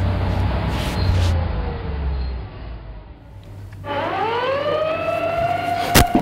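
A low rumble that fades out after about two and a half seconds, then about four seconds in a siren starts up, its pitch rising slowly.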